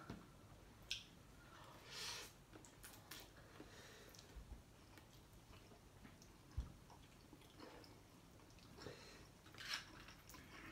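Faint chewing of a mouthful of instant noodles, close to near silence, with a few soft clicks and short rustles scattered through it.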